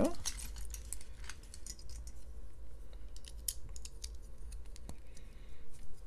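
Small plastic LEGO bricks clicking and rattling as hands sift through a loose pile on a tabletop, many light irregular clicks over a steady low hum.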